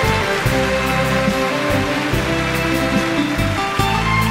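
Live stage band music playing an instrumental passage without singing: sustained chords over a moving bass line.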